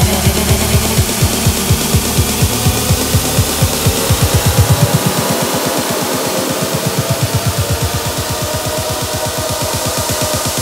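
Electronic dance music (techno) with a steady kick drum about twice a second. About four seconds in, the beat quickens into a fast roll and the deep bass drops out, as in a build-up.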